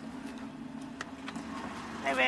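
A car engine idling with a low steady hum, and a short sharp click about a second in.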